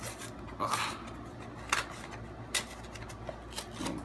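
A small cardboard candle box being ripped open along its glued seam by hand: card rubbing and scraping, with a few short, sharp tearing snaps.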